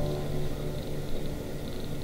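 Digital piano holding a chord that slowly fades, a low bass note lasting longest.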